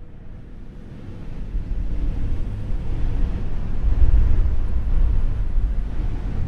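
A low rushing rumble fading up from silence and swelling steadily louder, with no distinct tones or beats.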